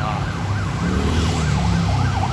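Emergency-vehicle siren on a fast yelp, its pitch sweeping up and down about three times a second, over the low rumble of road traffic.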